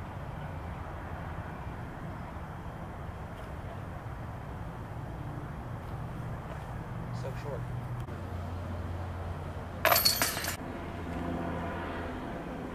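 Steady low hum of distant road traffic, then about ten seconds in a short, loud clinking clatter that lasts under a second.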